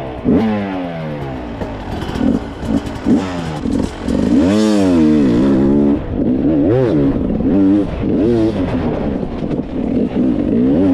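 Enduro dirt bike engine heard up close from the bike, revving up and dropping back again and again as it is ridden hard along a rough singletrack. There is a long climb and fall in revs about halfway through, then a run of short rev blips.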